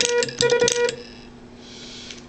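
A Les Logan Speed-X semi-automatic key (bug) sending two short runs of rapid automatic dots, keyed through a buzzy tone of about 500 Hz with clicks at each dot. The runs stop cleanly about a second in: the pendulum damper is set so it just touches the damper wheel, the way it should be adjusted.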